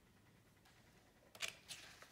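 Near silence, then a short cluster of light clicks and rustles beginning a little over a second in.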